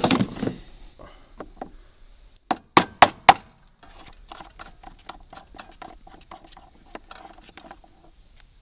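Plastic dash panel of a compact tractor being pried and pulled off: four sharp snaps of its clips about two and a half to three and a half seconds in, then light clicking and rattling as the panel is worked loose.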